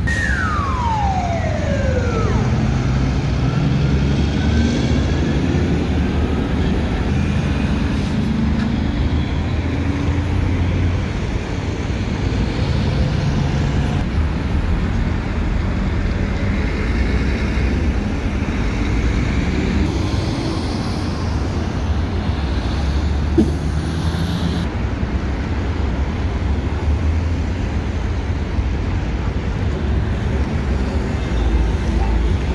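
Steady roadside noise of heavy highway traffic rumbling past. In the first two seconds a single high tone slides steadily down in pitch.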